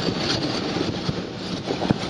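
Automatic car wash spraying water over the car, heard from inside the cabin as a steady rushing hiss that eases slightly toward the end.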